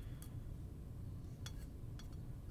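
Metal tweezers picking at small lock pins in a brass pin tray: a faint metallic click just after the start and a sharper one about a second and a half in.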